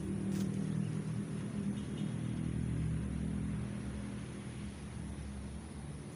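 A running engine: a low, steady hum that slowly fades over the second half.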